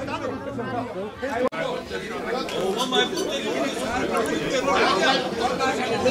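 Many people talking at once: overlapping, indistinct chatter of a gathering.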